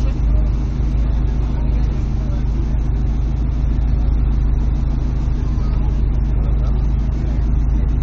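Car engine idling steadily at a standstill, a low, even hum heard from inside the cabin.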